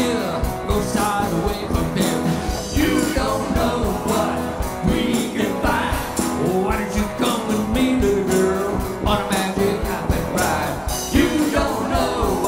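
Live band playing a rock and roll song with a steady drum beat, electric guitars and bass, with a male voice singing lead.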